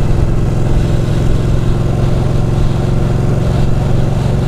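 Ducati 1299 Panigale's Superquadro V-twin engine running at steady revs while the bike cruises along the road.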